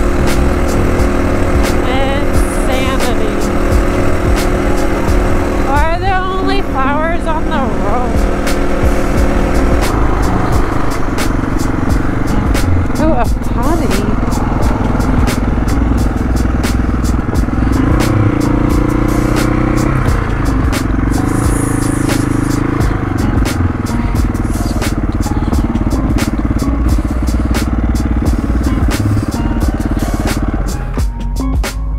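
Dirt bike engine running under way, with wind buffeting the helmet-mounted microphone and background music mixed over it.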